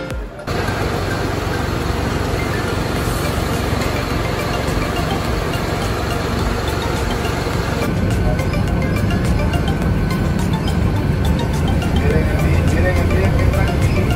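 Lobby hubbub of indistinct voices and movement. About eight seconds in it changes to city street traffic, with a truck's engine running close by as a low rumble.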